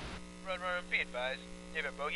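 A steady electrical hum with a thin, radio-like voice speaking over it in short phrases, as in two-way radio chatter.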